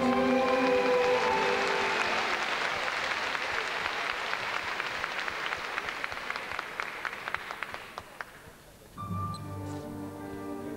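Large arena audience applauding, a dense crackle that slowly dies away over about eight seconds, with the last held notes of music under it at first. About nine seconds in, orchestral music with long held notes begins.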